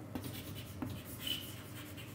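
Chalk writing on a blackboard: a few faint scratches and taps as a word is written, with one brief squeak of the chalk a little past the middle.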